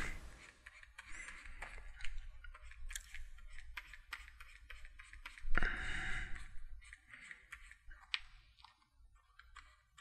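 Faint scattered clicks and light scratching of a stylus working on a pressure-sensitive graphics tablet during brush strokes, with a louder rustle about five and a half seconds in.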